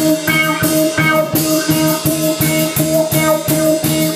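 Live band music: an electric bass playing a repeating low riff over a steady drum-kit groove with even cymbal strokes, and no trumpet.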